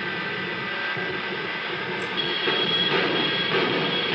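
Jet engines of jet-powered drag-racing trucks running with afterburners lit: a steady rushing noise, joined about two seconds in by a steady high whine.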